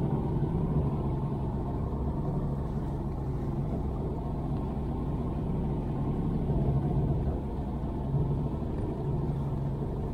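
A fishing boat's motor running steadily as the boat moves across open water, heard as a low, even rumble.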